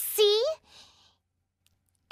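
A single spoken word, "See?", at the start, then near silence.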